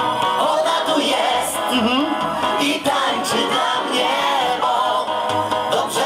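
Live disco polo music played loud through a stage PA, heard from the crowd, with a male voice singing over the upbeat backing.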